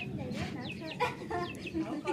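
Chickens clucking in short calls, with faint voices underneath.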